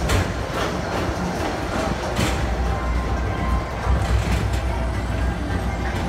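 Tomorrowland Transit Authority PeopleMover car running along its elevated track, heard from aboard: a steady low rumble, with a few sharp clicks in the first couple of seconds.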